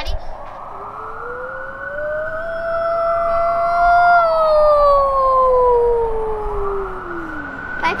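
A girl imitating a siren with her voice: one long wail that rises for about three seconds, then slides down and dies away near the end, likened to a dog howling. A real emergency-vehicle siren wails faintly behind it.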